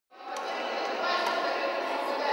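Many children's voices chattering and calling over one another in a large echoing sports hall, with a few faint sharp taps of badminton rackets hitting shuttlecocks.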